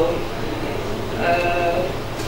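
A woman's voice holding one drawn-out, level-pitched hesitation vowel, like "ehh", that starts a little after a second in, following a brief pause with only room noise.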